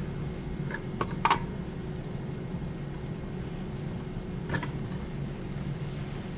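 Steady low room hum, with a few light clicks and knocks: a quick cluster around one second in and another single knock about four and a half seconds in.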